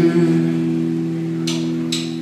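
Amplified guitars ringing out on a held chord that slowly fades, with two short hissing sounds near the end.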